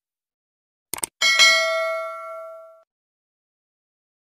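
Subscribe-button animation sound effect: two quick clicks about a second in, then a notification bell ding that rings out and fades over about a second and a half.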